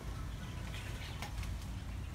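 Steady low rumble of store ambience picked up by a hand-held phone carried down an aisle, with a few faint clicks about a second in.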